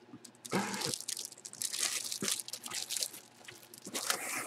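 Clear plastic packaging crinkling and crackling as a folded football jersey is handled and pulled out of its box, in a dense run of small crackles.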